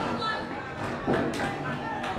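Candlepin bowling balls rolling down wooden lanes amid a busy alley's background din, with a couple of sharp knocks about a second in. Faint voices can be heard under it.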